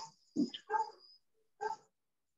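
A dog barking a few short, faint times, heard through a video call.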